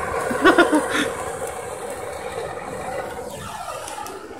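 Handheld propane torch burning with a steady hiss. A short voice sound comes about half a second in, and a falling tone near the end.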